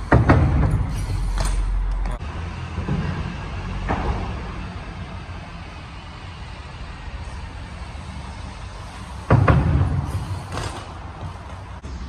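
BMX bike riding on wet concrete, with a loud thump just after the start, a lighter knock about four seconds in and another loud thump about nine seconds in, over a steady low rumble.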